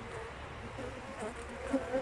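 Honeybees buzzing in a steady, wavering hum around a comb frame lifted out of an open hive.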